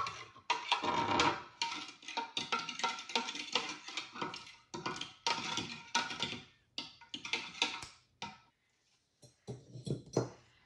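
Metal spoon stirring a cream-and-milk mixture in a glass measuring cup, clinking rapidly and unevenly against the glass. The clinking stops about eight and a half seconds in.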